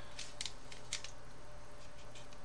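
A few short, sharp clicks and crackles from hands handling a plastic scale-model airplane, mostly in the first second, over a steady low hum.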